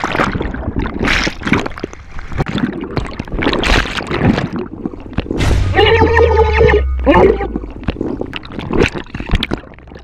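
Water splashing and churning around a body-mounted camera as a swimmer frantically backpedals away from a great white shark. About five and a half seconds in, a man screams, a high held cry lasting nearly two seconds with a break near its end.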